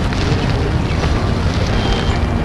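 Wind buffeting the microphone outdoors: a steady, mostly low noise without any clear tone or rhythm.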